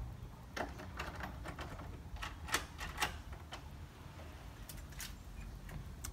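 Quiet, irregular sharp metallic clicks and rattles, about ten over several seconds, from the wrought-iron security screen door's deadbolt and knob being worked before the door opens.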